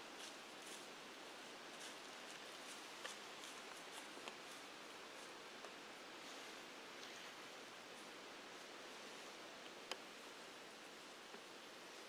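Near silence: a faint steady hiss with a few faint, soft ticks.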